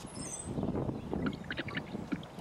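Water sloshing in a plastic bottle as it is tipped up and drunk from, with a few small gulping and handling clicks in the second half.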